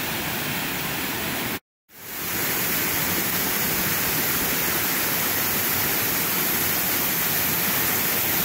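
Small rainforest waterfall and creek, the water rushing steadily. The sound cuts out briefly just under two seconds in, then another cascade's rushing fades back in, a little louder, and holds steady.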